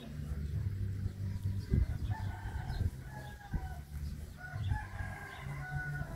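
An animal call in several drawn-out pitched syllables, starting about two seconds in, over a low rumble and a few short thumps.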